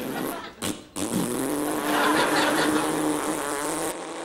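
A man making a long buzzing raspberry through pursed lips. It breaks off briefly about half a second in, then resumes as a steady drone held to the end.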